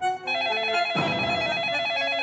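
Desk telephone's electronic ringer ringing: a fast warbling trill between two close pitches. It starts just after the beginning and stops shortly after the end.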